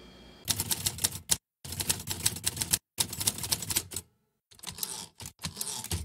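Typewriter keys clacking in quick runs of keystrokes, starting about half a second in and broken by several short pauses.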